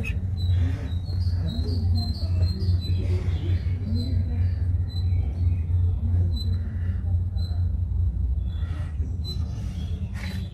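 Outdoor background: a steady low rumble with faint, short bird chirps through the first half and distant voices.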